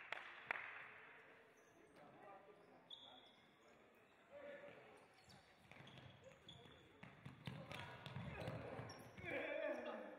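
A futsal ball being kicked and bouncing on a sports hall floor, sharp knocks with hall echo in the first half-second and fainter ones after. Shouted voices come in near the end.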